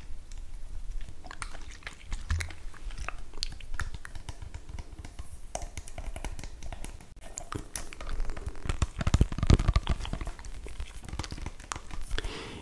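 Close-miked handling sounds: scattered soft clicks, taps and crackles of fingers on a small plastic spray bottle, with a denser patch of rustling about nine to ten seconds in.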